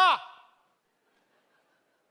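A man's word through a microphone trailing off with a falling pitch, then near silence from about half a second in.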